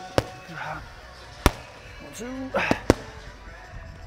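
Boxing gloves smacking focus mitts during pad work: four sharp smacks, the last two in quick succession.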